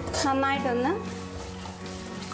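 Bird's eye chillies and garlic sizzling in hot oil in a metal pan as they are stirred with a ladle. A voice is heard briefly in the first second, and background music runs under it.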